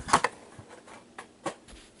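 A few light taps and rustles from cotton-gloved hands handling foil trading-card packs on a table, the clearest just at the start, then only faint handling sounds.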